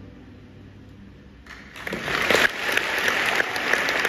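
The orchestra's last held chord fades out, and about a second and a half in the concert-hall audience breaks into loud applause.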